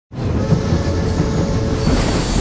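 Steam train running, a dense, steady rumble with hiss, as mixed for a film soundtrack.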